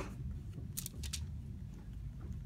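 Paper being folded and pressed down by hand over a glued book board, with two short crinkles just under a second in and a low steady hum underneath.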